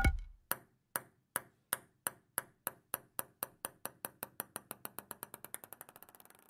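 Edited outro sound effect: a sharp ringing hit, then a run of short clicks that come faster and faster and slowly fade, like a ball bouncing to rest.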